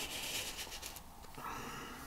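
Black marker pen drawing on paper, a faint scratchy hiss as the nib traces a circle through a plastic circle stencil.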